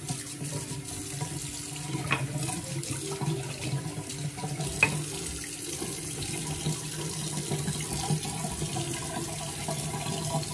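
Bathroom tap running into a sink while cold water is splashed on the face, a rinse after the shave. Two sharp clicks stand out, about two and five seconds in, the second the louder.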